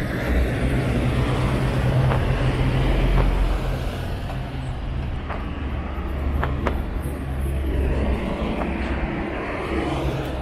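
Road traffic going past: minibuses and cars driving by in a steady low rumble, with a few faint clicks.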